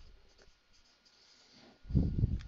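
Marker pen writing on a whiteboard, faint short strokes, then a loud low thump near the end.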